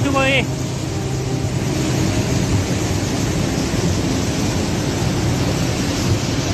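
A flash-flooding river rushing at full spate: a loud, steady wash of muddy floodwater pouring past.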